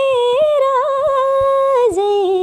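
A woman singing solo and unaccompanied, holding long notes decorated with small wavering turns. Near the end the melody steps down to lower notes.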